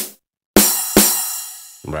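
Amapiano snare sample played on its own from a beat: two sharp hits about half a second apart, each fading out in a long tail.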